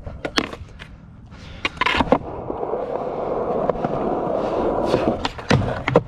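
Skateboard on concrete: sharp clacks of the board popping and landing in the first two seconds, then the wheels rolling steadily. Another set of clacks near the end as a frontside 360 flip is popped and landed.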